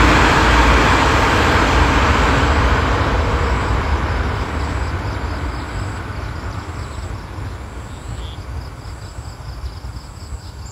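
A motor vehicle passing, its road noise loud at first and then fading steadily into the distance.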